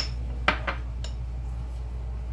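Light clinks and knocks of ceramic dishes being handled and set down on a kitchen countertop: one at the start, the loudest about half a second in, and two more within the next half second. A steady low hum runs underneath.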